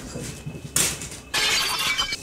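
Glass shattering, as of a small hand mirror breaking: a sharp crack a little under a second in, then a longer burst of breaking, ringing glass near the end.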